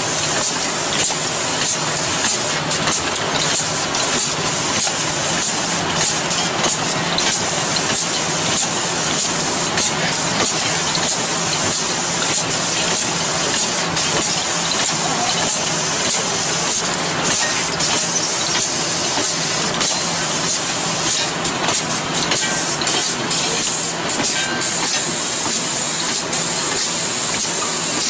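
Automatic rotary capping machine running steadily: an even mechanical hiss with a low hum underneath and faint scattered clicks.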